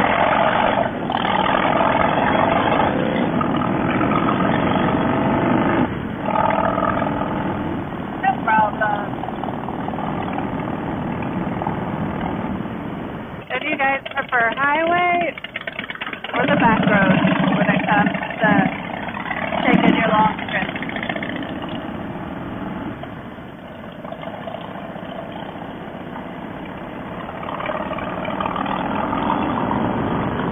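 Harley-Davidson Fat Boy's V-twin engine running on the move, under a steady rushing road noise, with a muffled, unclear voice coming through around the middle.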